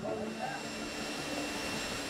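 Airliner cabin noise in flight: a steady rush of engine and airflow noise with a faint, thin high whine, heard from inside the cabin.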